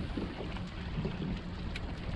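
Wind rumbling on the microphone over the lap of water around a small open fishing boat, with one faint click about three-quarters of the way through.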